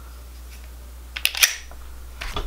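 Girsan MC28 SA 9mm pistol being handled: a quick cluster of sharp metal clicks a little over a second in, over a faint steady low hum.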